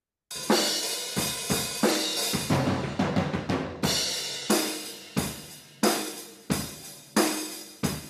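Multitrack drum kit recording played back from a mixing session: kick, snare and a thick wash of cymbals, hits landing about every two-thirds of a second after a brief silence. The cymbals come across as quite noisy.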